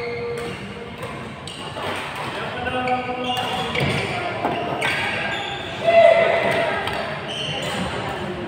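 Badminton being played in a large hall: rackets strike shuttlecocks with sharp hits, shoes squeak briefly on the court floor, and players' voices carry through the hall, the loudest call coming about three quarters of the way through.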